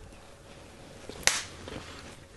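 A single sharp click of a kitchen utensil about a second in, as the paprika-laden teaspoon and spice container are handled at a stainless steel mixing bowl, over faint low room noise.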